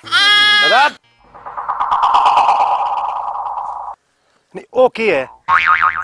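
A man's loud drawn-out wail lasting about a second, followed by a buzzing, warbling sound about three seconds long that swells and fades, then a few spoken words near the end.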